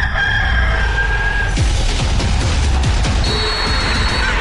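A rooster crowing, one long call lasting about a second and a half at the start, over intro music with heavy bass.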